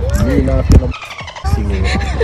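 Indistinct voices of people talking over a steady low rumble. One sharp click comes a little before a second in, and then everything drops out briefly.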